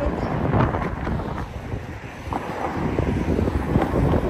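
Wind buffeting the microphone over road traffic, with a car driving close past near the end.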